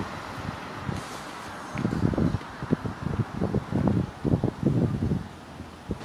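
Wind buffeting the microphone in a run of irregular low gusts from about two seconds in until about five seconds, over a steady outdoor street background.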